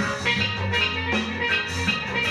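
A live ska band playing: a steel pan melody over drums and bass guitar, with a steady beat of about four strikes a second.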